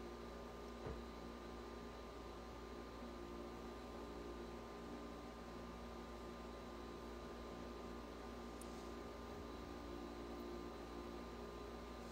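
Steady hum of an ice machine running, with several faint held tones over a low hiss; the machine is really struggling. A faint click about a second in.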